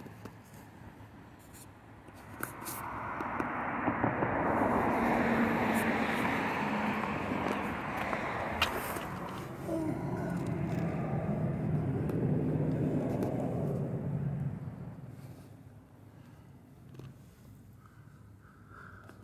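A passing vehicle's engine and road noise swells over a couple of seconds, holds for about ten seconds, then fades away.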